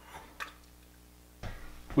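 Quiet room tone with a steady faint low hum, a single sharp click about half a second in, and a soft low thump about one and a half seconds in.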